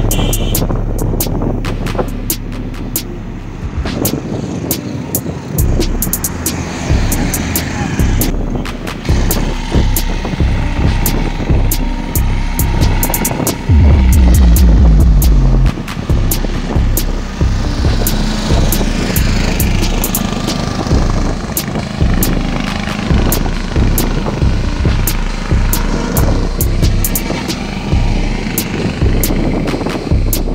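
Motor traffic passing on a bridge roadway: trucks, cars and motorbikes going by close to the microphone. About halfway through there is a loud low rumble lasting a couple of seconds.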